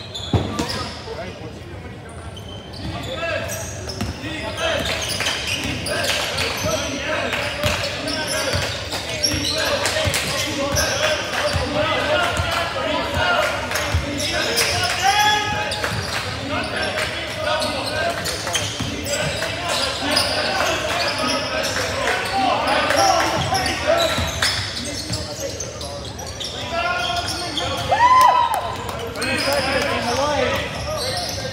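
Basketball play on a hardwood gym court: a ball bouncing as it is dribbled, with short sneaker squeaks as players cut and stop, loudest near the end, under players' and spectators' shouts.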